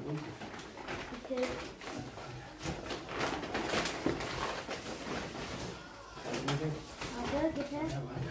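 Rustling and crinkling of gift packaging as presents are handled, busiest in the middle, under low murmured voices.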